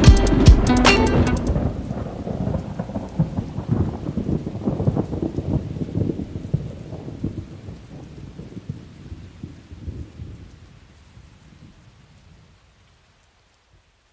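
The song's last guitar notes and beat stop about a second and a half in, leaving a recorded rain-and-thunderstorm effect with low rumbles of thunder that slowly fades away about twelve seconds in.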